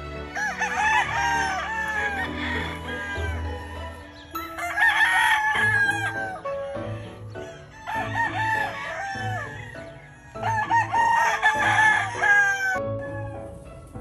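Game rooster crowing four times, a few seconds apart, over background music with a steady beat.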